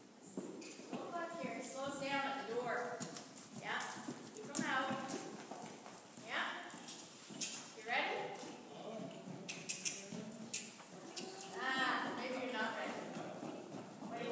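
Hoofbeats of a pony cantering on the soft dirt footing of an indoor arena, with indistinct voices speaking at intervals over them.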